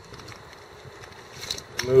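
Quiet outdoor background hiss with a faint click about one and a half seconds in; a man's voice starts again just before the end.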